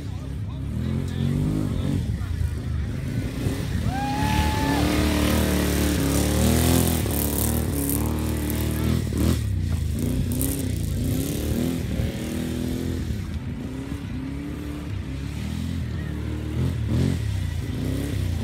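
Small gas golf cart engines revving up and easing off again and again as the carts drive and turn around a cone course. A brief high steady tone sounds about four seconds in.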